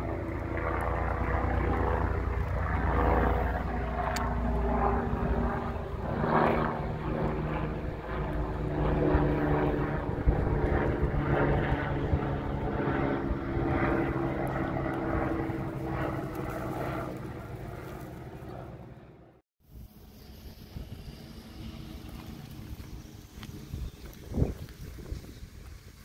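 An aircraft flying overhead: a steady engine drone whose pitch shifts slowly. It fades and cuts off abruptly about three-quarters of the way through, leaving quieter outdoor background with a few soft knocks.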